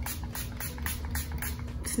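Coconut setting-mist spray bottle pumped repeatedly at the face: a rapid run of short spray hisses, several a second, that sounds aggressive.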